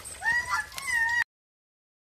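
An animal's high whining calls: about three short whines, the first rising, in the first second or so. Then the sound cuts off abruptly into silence.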